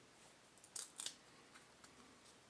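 Trading cards sliding against one another as a stack is flipped through by hand: two brief swishes about a second in, with a few faint clicks.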